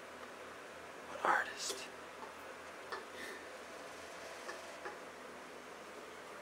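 Hushed whispering, with one short louder breathy burst a little over a second in and a few faint clicks.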